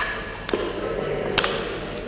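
A few sharp taps and light clinks from the priest's hands at the altar as he breaks the host and handles the metal paten and chalice. One comes at the start, one about half a second in, and a louder double tap about a second and a half in.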